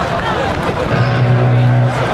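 Metal band playing live through a festival PA, heard from far back in the crowd, with a held low distorted note about halfway through. Voices sound close to the microphone.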